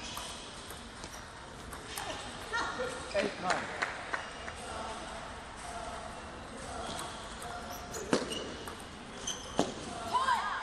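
Table tennis rally: the plastic ball cracking off rubber-faced paddles and bouncing on the table in a string of sharp clicks, with a cluster a few seconds in and single loud hits near the end.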